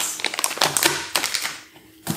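A plastic sweets bag crinkling as it is handled, a rapid crackle that dies away about a second and a half in.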